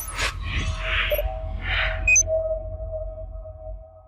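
Logo-animation sound design: a whoosh over a deep rumble, two softer swishes, then a short high blip and a steady ringing tone that fades away near the end.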